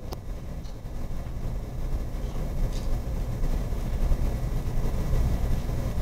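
Low rumble and noise on a handheld microphone that slowly grows louder, with one sharp click just after the start.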